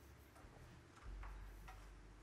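Near silence: faint scattered ticks and clicks, with a soft low hum coming in about a second in.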